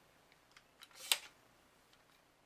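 A sharp click about a second in, with a few faint ticks before it, as the AR-15 lower receiver is handled and turned over.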